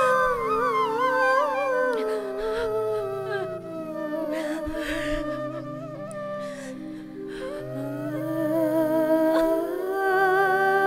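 Film background score: a wordless humming vocal melody that wavers and glides over sustained low held notes. It fades down through the middle and swells again near the end.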